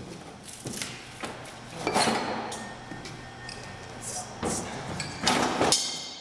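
Halligan bar's fork end knocking and scraping against a carriage bolt and the door as the bolt is worked loose: a string of irregular metal knocks with two longer grinding scrapes, the loudest near the end.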